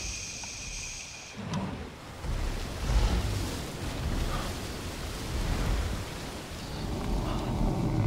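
Deep rumbling swells over a steady wash of noise like moving water, the film sound of a giant moss-covered buffalo-like creature standing in a marsh.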